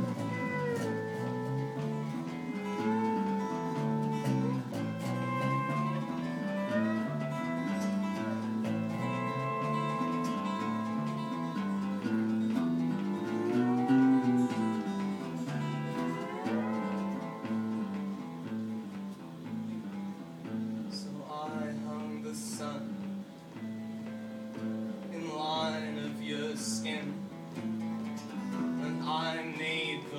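Instrumental guitar break in a live acoustic band performance: a lead guitar plays a melody that slides and bends between notes over a lower guitar part moving in a steady rhythm.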